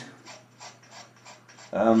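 Faint, rhythmic rubbing strokes, about three a second, as a hand works at the burner of a paraffin heater, over a steady low hum.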